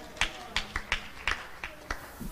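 A run of sharp, irregular hand claps, about four a second, over a faint voice.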